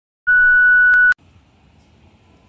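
A steady, high-pitched test-tone beep like the one played with TV colour bars. It starts about a quarter second in, holds for just under a second and cuts off abruptly.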